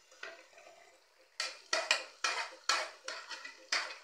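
Metal spoon scraping mashed boiled potato off a plate into an aluminium pan, knocking against the plate and pan in a run of sharp clinks about three a second from about a second and a half in.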